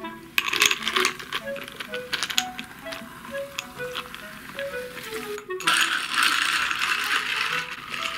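Cola poured over a glass packed with ice cubes: a rapid run of sharp clicks and crackles as the ice cracks and shifts, then a louder steady fizzing hiss of carbonated soda for the last two seconds or so.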